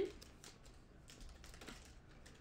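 Faint, irregular light clicks and slides of trading cards being flipped through by hand, one card moved behind the next.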